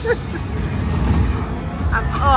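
Dragon Spin video slot machine playing its bonus-round sound effects: a few short chiming notes at the start, then a steady low rumble as the multiplier builds, over casino background chatter.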